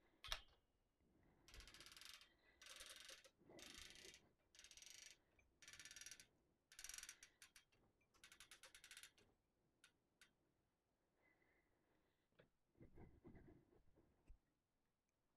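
Muslin quilt backing being adjusted by hand on a longarm quilting frame: a run of about eight faint, evenly spaced rasping strokes, each about half a second long, then a few soft clicks.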